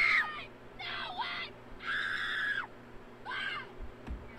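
A person screaming in high-pitched bursts, about four times, each scream under a second long.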